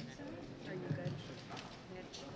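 Press-briefing room during a silence at the podium: low murmur of voices with irregular, rapid clicks typical of press camera shutters.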